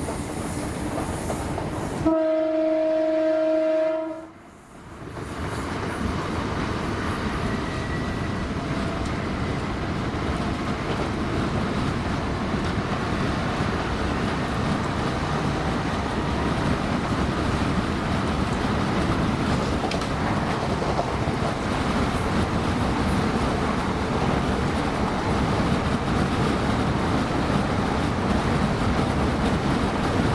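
Inside a Class 317 electric multiple unit running at speed: steady running noise of the train on the rails. About two seconds in, a train horn sounds one loud, steady note held for about two seconds.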